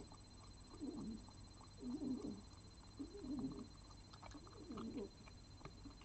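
An animal calling four times: low, wavering calls, each about half a second long, spaced roughly a second apart.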